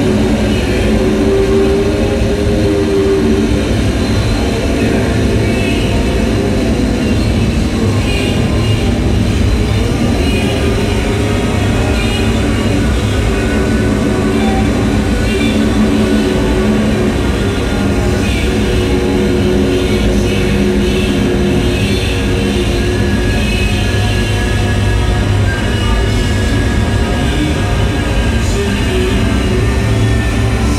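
Loud, continuous experimental noise music: a dense, unbroken rumble with slowly shifting held tones above it and no beat.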